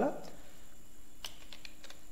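A few quiet key clicks from a computer keyboard as code is typed.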